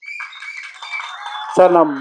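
A man's voice: one drawn-out word with a falling pitch about one and a half seconds in, the loudest thing here. It sits over a steady, busy background din with a few held tones that sets in sharply at the start.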